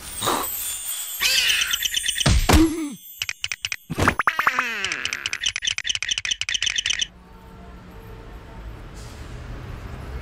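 Cartoon sound effects: a glittering magical shimmer, a falling boing, then a run of rapid chirping squeaks that cuts off suddenly about seven seconds in, leaving a quieter stretch.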